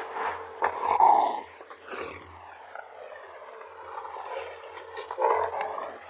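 A tiger vocalizing at close range with breathy, unpitched sounds, loudest about a second in and again near the end.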